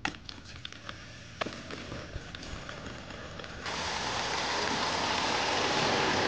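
Scattered light clicks and rattles of a rolling suitcase pulled over wet paving. About three and a half seconds in, a steady loud hiss starts suddenly, and it cuts off just as suddenly at the end.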